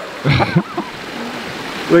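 Steady rush of water from a small rock waterfall cascading into the pond. A man's short vocal outburst comes about half a second in, and a laugh right at the end.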